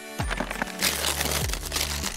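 Gift wrapping paper being torn open and crinkled, a sound effect over steady background music.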